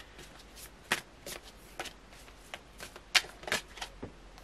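A tarot deck being shuffled by hand: irregular crisp slaps and flicks of cards against each other, a few a second, the loudest about three seconds in.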